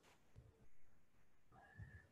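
Near silence: a pause in speech, with a faint low sound around the middle and a brief faint sound just before the talking resumes.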